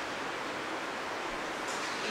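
Steady, even background hiss of room tone, with no distinct sound event.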